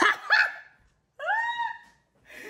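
High-pitched vocal calls: a brief yelp at the start, then a cry that rises in pitch and holds for under a second.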